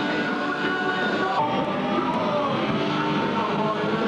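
Metal band playing live: distorted electric guitars over drums, a dense, steady wall of sound with some gliding guitar lines.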